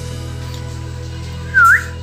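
Background music with steady low tones. About one and a half seconds in comes a single short, loud whistle that dips and then rises sharply.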